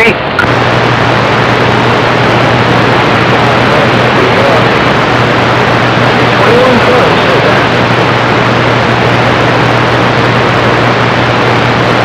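CB radio receiver hissing with band static between transmissions on a skip channel, a steady low hum running under it from about half a second in, and a faint distant voice buried in the noise.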